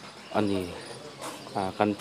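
A person speaking in two short bursts, over a faint, steady, high chirring of insects.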